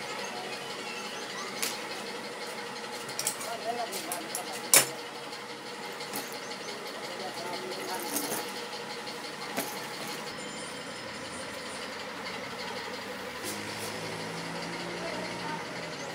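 A finished fabric backpack being handled and lifted: a scatter of light clicks and knocks, the sharpest about five seconds in, over steady background noise with voices.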